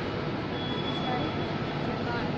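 Steady ambient noise of a busy railway station concourse: a broad hum and wash with no clear voices, and a faint thin tone about half a second in that fades out under a second later.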